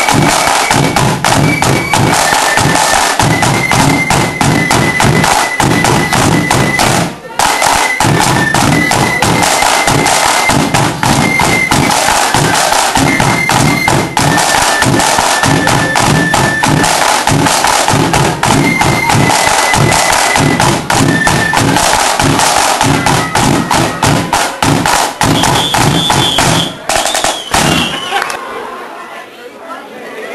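Marching flute band playing: flutes carry a high melody over dense snare drumming and bass drum. The tune stops about two seconds before the end.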